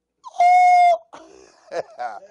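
A man laughing: one loud, high, held hoot-like cry lasting under a second, then a few short, weaker laughing breaths.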